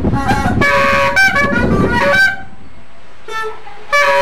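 Caña de millo, the Colombian transverse cane clarinet, played in held notes: a short phrase of several notes in the first two seconds, a pause, then a brief note near the end.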